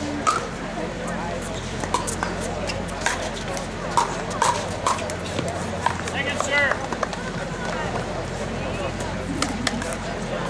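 Pickleball rally: paddles striking the plastic ball in a series of sharp pocks, with three quick volleys about four seconds in before the point ends.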